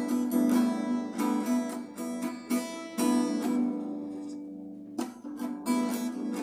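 Instrumental music: acoustic guitar picking and strumming. The playing dies away about four seconds in, then picks up again with a sharp new strum at about five seconds.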